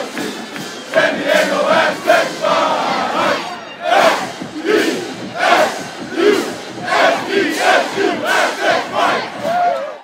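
A group of football players chanting and shouting together in celebration of a win, the voices falling into a rhythmic beat of loud shouted syllables about every second from partway through, then fading out at the end.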